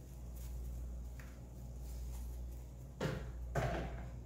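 Steady low hum under quiet kitchen handling, with a few faint clicks; about three seconds in, a brief rustling scrape as cinnamon sugar is spread by hand over a freshly fried buñuelo on a plate.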